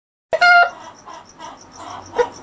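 A rooster calling: a short, loud pitched squawk starting abruptly a third of a second in, followed by softer clucking and chirping sounds.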